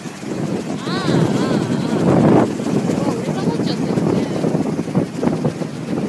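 River rapids rushing and splashing close by as a boat drifts through whitewater, with wind buffeting the microphone. A short voice exclamation comes about a second in.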